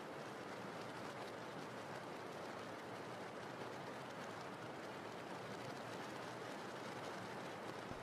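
Faint, steady rain ambience: an even hiss of falling rain with no distinct events.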